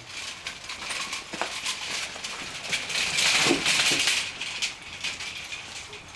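Metal wire-mesh garden cart rattling and clinking as it is pulled over gravel, with crunching that is loudest about three seconds in. A few short squeaks sound among the rattles.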